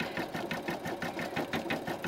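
Computerized embroidery machine stitching a design in the hoop by itself, its needle striking at a rapid, even rhythm.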